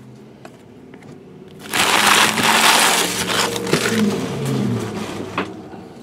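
Trading-card packaging, pack wrappers, being crumpled by hand. There is a loud crinkling rustle for about two seconds that then tapers off, and a short laugh comes near the end.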